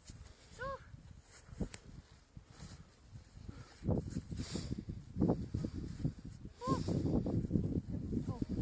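Crunching steps and scrambling on frozen snow and rock, with two short high vocal cries, one near the start and one near the end. A low wind rumble on the microphone runs underneath.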